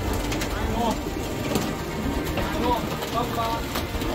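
A crowd of racing pigeons shuffling and fluttering in a wooden loft as they are herded together for basketing, a steady scuffle of wings and feet with a few sharp clicks.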